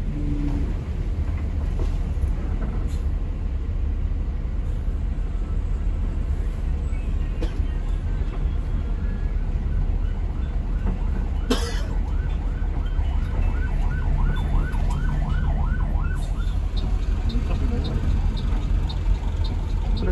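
Steady low rumble of a Mercedes-Benz OH 1526 tour bus's diesel engine, heard from inside the cabin as it crawls in a traffic jam. From about halfway, an emergency-vehicle siren yelps in a repeated rising-falling tone two to three times a second, with a sharp click among it, followed by faint quick ticking near the end.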